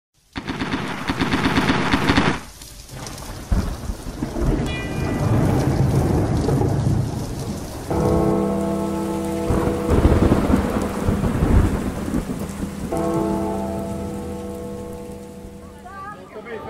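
Thunderstorm sound effect: rain and rolling thunder with several louder claps, with long held tones coming in twice, about eight and thirteen seconds in, and the whole fading out near the end.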